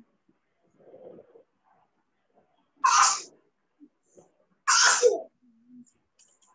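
A person sneezing twice, about two seconds apart.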